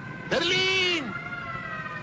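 A dog barks once, a long bark that rises and falls in pitch, starting just after the beginning. Under it a siren wails steadily in the background.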